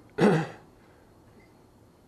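A man coughs once, a short harsh cough that clears his throat, about a quarter of a second in.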